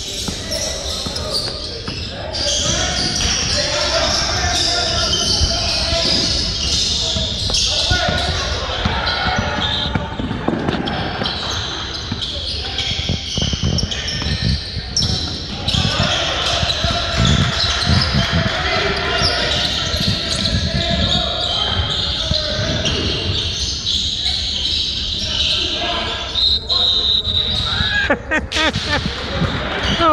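Pickup basketball game on a hardwood gym floor: a basketball bouncing and thudding on the court amid players' and spectators' voices calling out, all echoing in the large gym.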